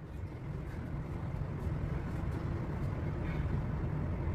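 Steady low rumble of background room noise, with no speech, growing slightly over the first second and then holding even.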